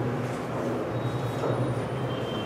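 Steady low hum and hiss of room noise, with no clear single event.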